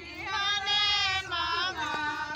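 High-pitched voices singing a song in long held notes.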